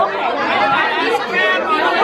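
Lively chatter: several women talking over one another at close range, with no single voice standing out.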